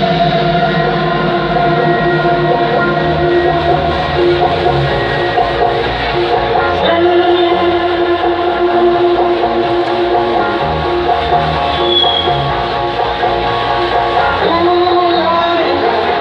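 Loud music from a concert stage's sound system, carried by long held notes.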